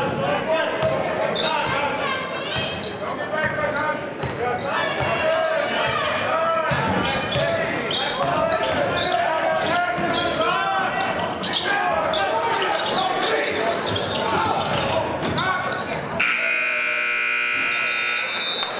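Live basketball game sounds in a gymnasium: voices of players and crowd calling out and a ball bouncing on the hardwood floor. About sixteen seconds in, a scoreboard horn sounds steadily for about two seconds.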